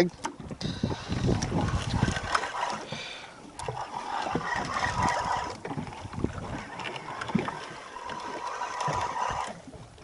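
Handling noise of a large red snapper held over a boat deck: irregular rustling with many small clicks and knocks that swell and fade, with water sloshing against the hull.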